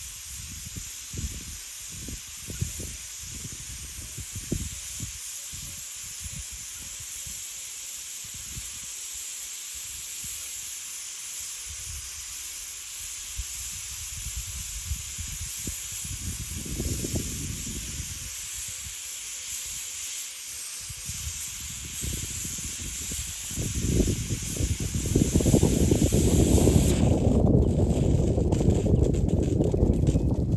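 Irrigation sprinklers spraying water with a steady hiss. Wind buffets the microphone in gusts, becoming loud over the last few seconds.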